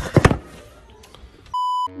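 A single short electronic beep, one steady tone held for about a third of a second near the end and cut in sharply against silence. It follows a burst of noisy meme-clip audio with a few loud hits at the start.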